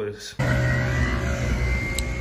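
Background music fading out, then about half a second in an abrupt change to steady street-traffic noise with a low hum.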